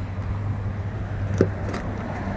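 A steady low hum, with one sharp click a little past the middle.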